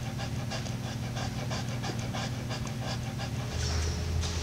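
Great Dane panting quickly and evenly, about four breaths a second, over a steady low hum.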